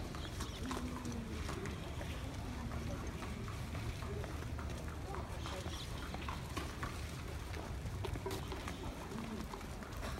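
Racehorses walking on the paddock path, with scattered light hoof clicks, under indistinct murmuring voices and a steady low background rumble.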